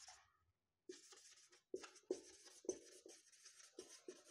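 Marker pen writing on a whiteboard: a run of short, faint strokes starting about a second in as words are written out.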